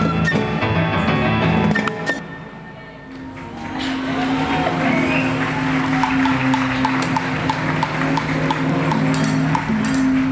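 Latin jazz band music with drums, percussion and guitar, which breaks off about two seconds in. A quieter passage follows: a held low note over a hiss, with light ticks about twice a second.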